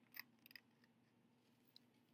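Faint, short strokes of a felt-tip marker on a paper plate as a face is drawn: two quick ones close together near the start and a fainter one near the end, over near silence.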